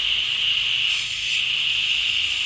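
Garden hose shower-spray nozzle spraying water onto potting soil in small plastic pots: a steady hiss of falling water.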